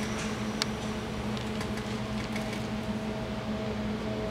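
A steady low machine hum with a few faint ticks.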